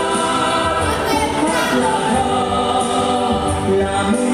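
Recorded music with choral singing: sustained sung lines over steady accompaniment.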